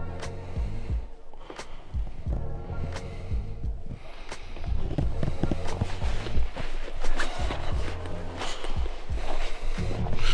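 Background music with a steady beat and bass line, with footsteps on a stony path heard under it.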